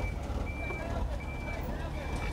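Truck's reversing alarm beeping, short high beeps evenly spaced about 0.7 s apart, three of them, over the low rumble of the truck's engine running.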